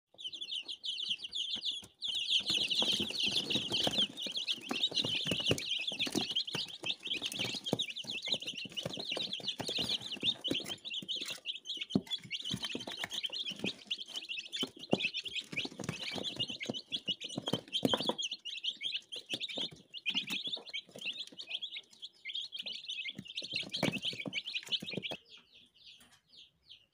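A box of day-old chicks peeping continuously, many short high calls overlapping, louder from about two seconds in. Many small taps and clicks mingle with the calls.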